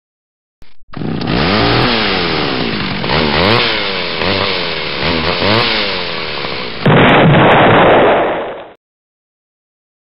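Blender motor sound effect revving hard, its pitch rising and falling about once a second. About seven seconds in, a louder explosion-like burst takes over for about two seconds, then cuts off suddenly.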